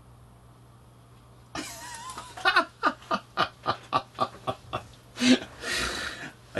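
A man laughing: a quick run of short bursts, about four a second, starting about a second and a half in, then a longer, louder laugh near the end.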